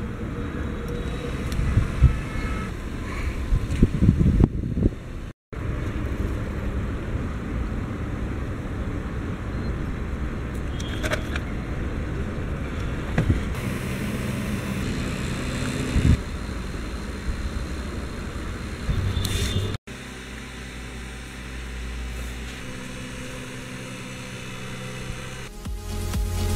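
Homemade fan with a small DC motor spinning blades cut from an aluminium drink can, running with a steady rushing of air that buffets the microphone. A few knocks sound in the first five seconds.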